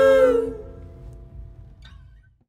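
Several singers' voices holding the song's final note together in harmony, fading out about half a second in; after that only a faint low room rumble.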